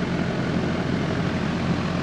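Air conditioner's outdoor condensing unit running: a steady mechanical drone of the compressor and condenser fan with a low hum underneath.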